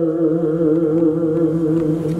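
A man's voice chanting unaccompanied into a microphone, holding one long, wavering note.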